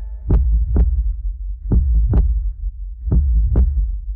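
Trailer sound design: a deep, heartbeat-like double thump sounds three times, about 1.4 s apart, over a steady low rumbling drone under the closing title card.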